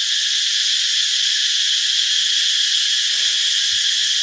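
Loud, steady, high-pitched chorus of insects, a continuous shrill with no breaks.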